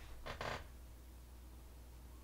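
Two quick, soft breathy puffs, like a short exhale through the nose, then quiet room tone with a faint low hum.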